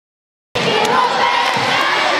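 A large arena audience cheering loudly, many high voices overlapping. It cuts in abruptly about half a second in.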